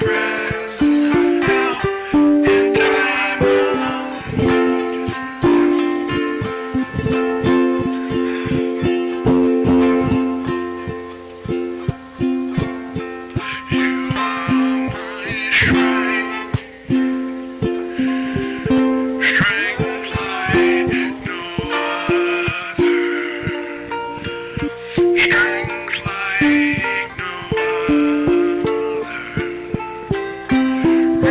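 Live band music led by a ukulele, plucked and strummed, with guitar backing in a steady rhythm.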